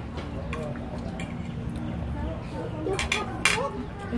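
Spoon and fork clinking and scraping on a china plate, a few sharp clinks spread out with the loudest about three and a half seconds in, over faint background voices.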